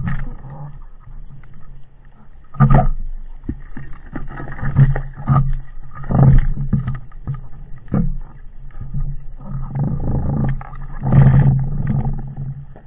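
Muffled underwater noise picked up by a camera in a waterproof housing: a low steady hum with loud swells of rushing water every second or two as the diver moves.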